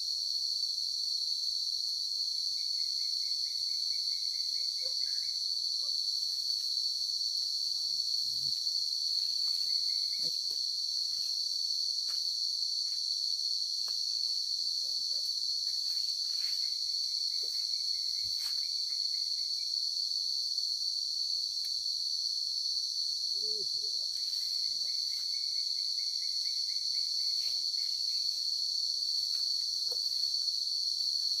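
A steady, high-pitched chorus of insects that never lets up. Faint rustling of footsteps through leafy undergrowth comes and goes beneath it.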